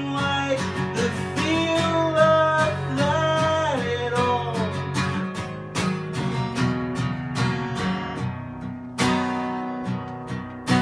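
Acoustic guitar strummed in a steady rhythm, with a voice singing long, sliding notes over the first half; after that the guitar plays on alone.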